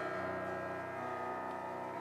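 Grand piano playing slow, quiet sustained notes and chords that ring on and fade gradually, with a few new notes coming in.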